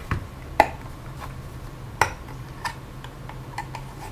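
Small screwdriver tip clicking against the metal case of a 3.5-inch hard drive as it is wedged under the label, with two sharper clicks about half a second and two seconds in and lighter ticks between, over a low steady hum.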